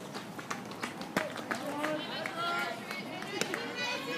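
Outdoor chatter and call-outs from players and spectators at a softball game, high young voices growing busier about halfway through, with scattered sharp knocks and one louder crack about a second in.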